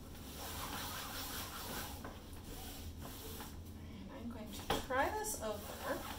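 Light rubbing of a paper towel wiping wet acrylic paint across a canvas, and about five seconds in a short, high-pitched whine that slides quickly up and down.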